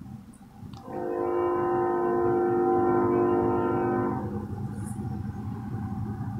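Train horn sounding one long chord of several steady tones for about three seconds, starting about a second in and fading out, over a low steady rumble.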